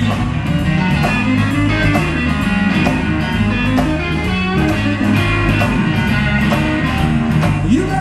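Live blues-rock band playing: electric guitar lines over bass and a steady drum beat.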